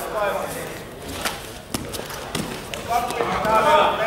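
Raised voices calling out in a large hall, with a few sharp thumps from grapplers' bodies and feet on the mat between the calls. The loudest call comes near the end.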